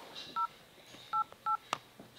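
Smartphone dial-pad keypad tones as digits are tapped: three short two-note beeps, about half a second, just over a second and a second and a half in, followed by one sharp click.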